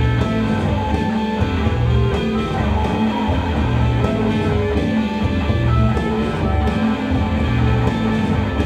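Rock band playing live: a guitar-led instrumental passage over held bass notes that change about once a second.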